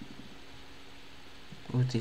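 Quiet room tone with a faint steady hum, then a man starts speaking near the end.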